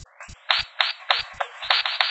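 Breakbeat drum loop run through Logic Pro insert effects switched on from a MIDI keyboard: the bass is stripped away, leaving thin, filtered drum hits under repeated rising filter sweeps, a glitch effect.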